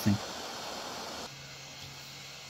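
Hot air rework gun blowing a steady hiss of hot air onto an earbud circuit board to reflow its solder. About a second in, the hiss drops away, leaving a quieter steady low hum.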